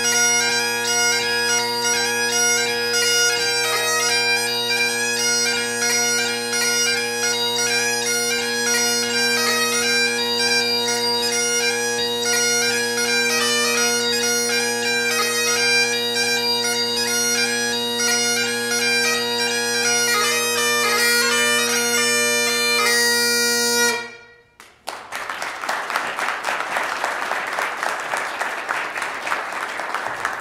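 Great Highland bagpipe played solo: three steady drones under a fast, heavily ornamented chanter melody, ending cleanly and abruptly about four-fifths of the way in. Audience applause follows the cut-off.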